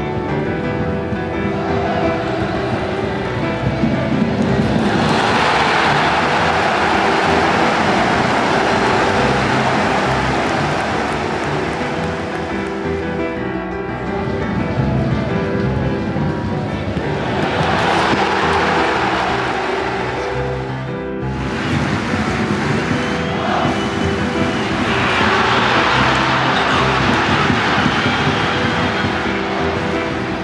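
Background music with sustained notes, over which the roar of a football stadium crowd swells up three times, from about five seconds in, again around eighteen seconds, and near the end.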